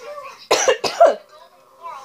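A woman coughing twice in quick succession, a cough from a cold she is sick with.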